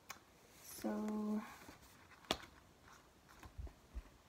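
A woman's short, steady hummed "mm" about a second in, then a single sharp click a little past halfway, over quiet room tone.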